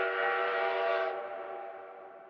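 Train whistle sound effect: one long blast of several steady notes sounding together, held level and then fading away from about a second in.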